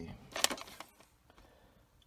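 A short plastic clack about half a second in, from cassette tapes in their cases being handled.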